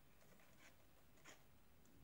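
Near silence: room tone, with two faint, brief scratches a little over half a second apart.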